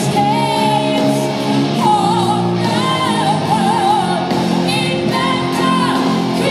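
Live heavy metal band: a female lead singer holds long notes with wide vibrato over distorted electric guitar.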